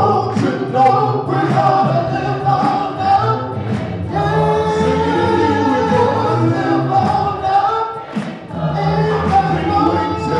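A cappella gospel singing: a man sings into a microphone with a group of voices, on long held notes, with a brief break about eight seconds in.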